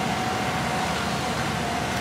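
Steady outdoor background hum with a faint steady tone running through it.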